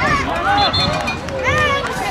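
Several voices, many of them high-pitched, shouting and calling over one another with no clear words: sideline spectators and players at a youth football game.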